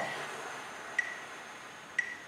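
A long, steady exhale of air, emptying the lungs over a slow count and fading gradually. A metronome clicks once a second throughout.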